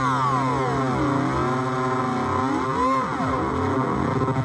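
Korg Volca Keys synth drone played through an Iron Ether FrantaBit bitcrusher pedal, its knob being turned so that a cluster of gliding tones sweeps down over the first second or so, then rises and falls again near three seconds in, over a steady low hum.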